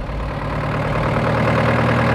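Jeep engine running steadily as the jeep drives closer, growing slightly louder.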